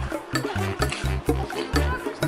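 Background music with a steady beat and deep, repeating bass notes.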